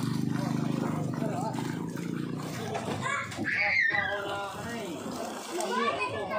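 Voices talking and calling out, over sloshing and splashing of muddy water as people wade and work a woven basket-sieve in the mud. A steady low drone sits under the first second or so.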